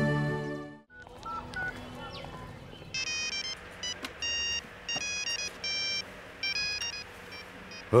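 A music cue fades out within the first second. About three seconds in, a mobile phone starts ringing with an electronic ringtone: a repeating melody of short beeping notes that stops just before the end.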